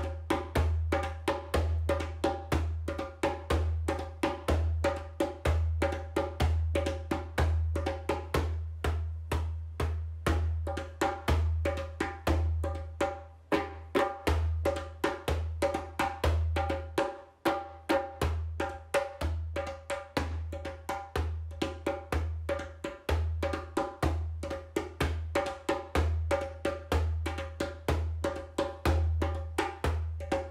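Steady, rapid drumming in a shamanic journeying rhythm: even strokes, each with a sharp woody click, over a deep low boom.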